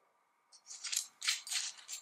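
Gold metal screw cap on an L'Erbolario reed-diffuser fragrance bottle being twisted open by hand: a quick series of short, high-pitched scrapes, starting about half a second in.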